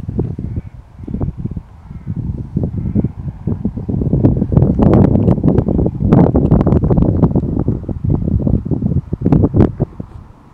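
Gusty wind buffeting the microphone: irregular low rumbling gusts that grow loudest through the middle, with several sharp pops near the end.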